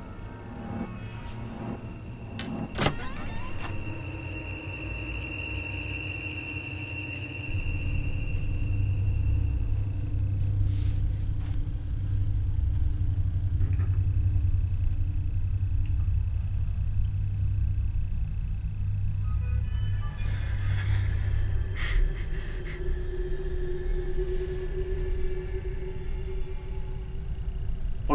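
Suspense soundtrack of a horror film: a steady low rumbling drone that grows louder about seven seconds in, with long held tones above it and a sharp click near the start.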